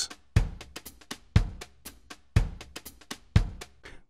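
Sliced drum loop from a REX file, its ten slices played back from the Punch 2 drum plugin's pads at 120 beats per minute. A heavy hit with a deep low end comes about once a second, with lighter hits between.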